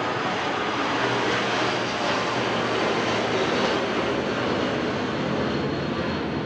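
Jet airliner passing overhead: a loud, steady rush of engine noise that drowns out speech.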